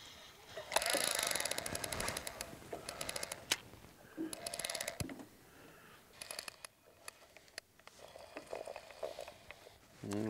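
Old baitcasting fishing reel clicking in bursts of rapid ticks as a hooked fish is played and reeled in; the densest run of clicks comes about a second in, with shorter bursts later.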